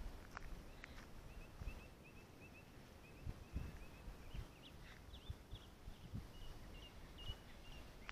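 A small bird calling in quick runs of short, high chirps, several a second, with pauses between runs, over faint outdoor background. Soft footsteps on a gravel road thud now and then beneath it.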